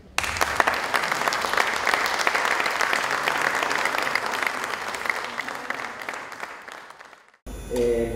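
Audience applauding a string ensemble at the end of a piece. The clapping breaks out sharply, slowly thins, and is cut off near the end.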